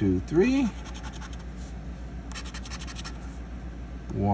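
A plastic scratcher tool scraping the coating off a lottery scratch-off ticket in short rasping strokes, busiest a little past the middle.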